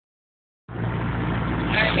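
Car engine running steadily, a low hum heard inside the cabin, starting abruptly just under a second in. A man's voice begins near the end.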